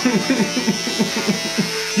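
Electric beard trimmer running as it cuts into a full beard, its pitch dipping and recovering about four times a second.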